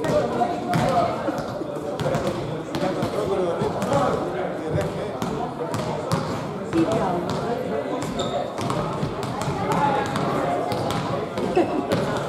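A basketball bouncing on a sports-hall floor, a string of irregular sharp thuds, over continuous chatter of many voices.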